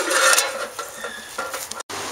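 Irregular scraping, rustling and clicking of close-up hand handling. It cuts off abruptly near the end into a steady outdoor hiss.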